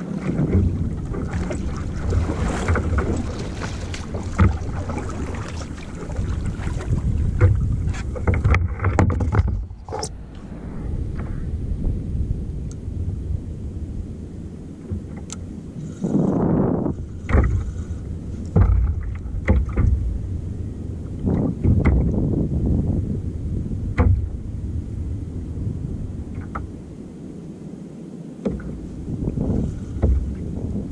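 Water splashing and sloshing against a kayak's hull, with paddle strokes in the first part that stop partway through and scattered knocks of gear on the hull.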